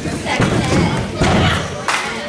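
A wrestler slammed down onto a pro-wrestling ring: the boards under the canvas mat thud, twice, about half a second in and again just over a second in.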